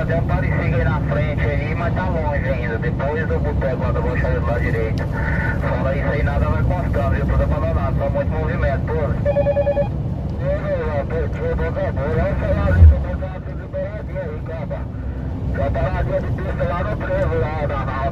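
Steady low rumble of a Scania 113 truck cab on the move, with voices talking over it throughout. A short beep is heard about nine seconds in, and a single heavy thump, the loudest sound, about thirteen seconds in.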